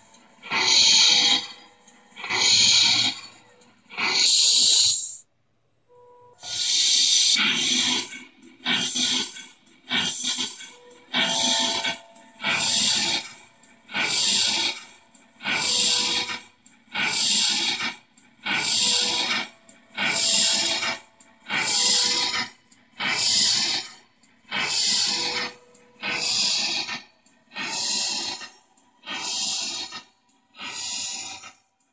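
RC riverboat model's onboard sound module playing a slow steam-engine exhaust, hissing chuffs about one every second and a half, with a short break about five seconds in.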